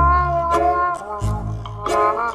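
Background music: a held melody over bass notes that change about every second, with short percussive hits.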